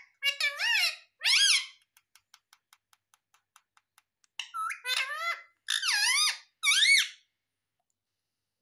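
Indian ringneck parakeet giving short, squeaky, speech-like calls whose pitch swoops up and down: two bursts in the first two seconds, then three more from about four and a half seconds in. Faint light ticks fill the pause between the bursts.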